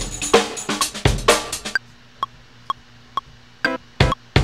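Chopped sampled drum loop playing back in Ableton Live, triggered in gate mode and quantised to sixteenths: dense kick and snare hits for the first couple of seconds, then a gap with only light ticks on each beat, then the drums cut back in near the end.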